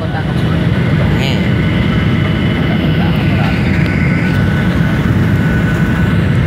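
Steady cabin rumble of a Boeing 737 airliner: jet engine and airflow noise heard from a passenger seat, with faint voices under it.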